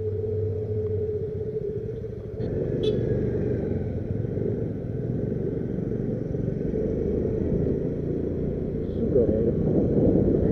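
A steady hum for about the first two seconds. Then it cuts to the running of a motorcycle on the move, a continuous rumble mixed with wind on the camera microphone, louder near the end.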